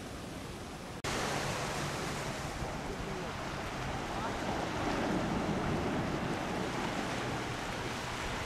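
Small waves breaking and washing up on a sandy shore, a steady rush of surf that jumps louder about a second in.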